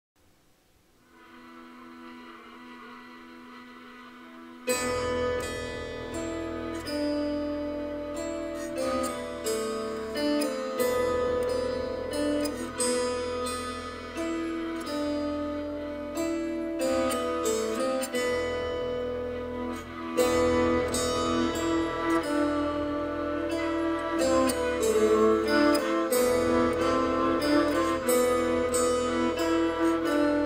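Jouhikko (bowed horsehair lyre) and a 16-foot tree harp playing a traditional Lithuanian Christmas carol. A soft sustained bowed tone starts about a second in; about five seconds in, plucked harp strings and a low drone come in suddenly and the playing carries on.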